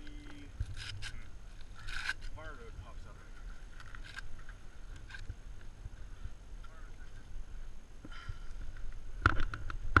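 Wind rumbling on the microphone. First-aid material rustles and scrapes in short bursts as it is wrapped around an injured foot, and there are a few quiet voice sounds, with a louder clatter near the end.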